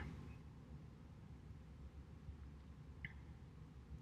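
Near silence: faint room tone with a low hum, and one brief faint high chirp about three seconds in.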